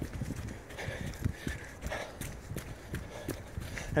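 Footsteps of a person jogging on a dirt trail, a quick, even run of soft thuds.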